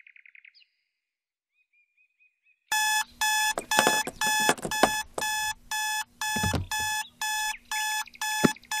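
Electronic alarm clock beeping loudly in a fast, even pattern of about three short beeps a second, starting almost three seconds in after a few faint bird chirps.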